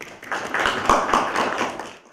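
Brief applause from a small seated group, many hands clapping at once, marking the end of a speaker's remarks. It swells within the first second and fades away near the end.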